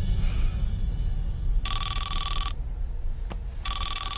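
Telephone ringing: two electronic rings of about a second each, the first about one and a half seconds in and the second near the end, over a low steady hum.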